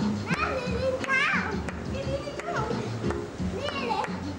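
A young child's high-pitched voice calling out several times, over background music with a steady beat.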